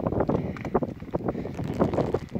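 Wind buffeting the microphone in irregular gusts, a rough noise that surges and drops every fraction of a second.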